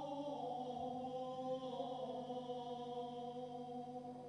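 A choir singing a slow sacred chant in long, held notes that move to a new pitch a couple of times.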